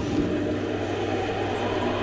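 A steady, sustained low drone with a faint even haze over it, the background score of the TV drama under a pause in the dialogue.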